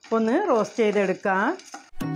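A woman's voice speaking, with no other sound standing out.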